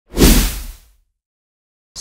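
A whoosh sound effect with a deep low boom underneath, swelling in fast and fading away within about a second: the sting for a news programme's logo intro.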